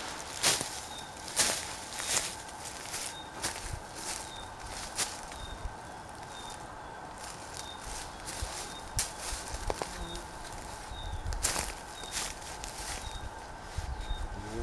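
Footsteps and rustling through dry leaf litter and ferns, with irregular sharp snaps and clicks from twigs and handled gear.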